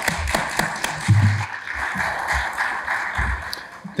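A small audience applauding, a steady patter of clapping that dies away near the end, with a couple of short low thumps in it.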